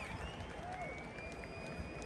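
Faint crowd noise with scattered applause and distant voices.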